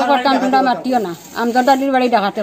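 A woman speaking in short phrases, with a brief pause about a second in.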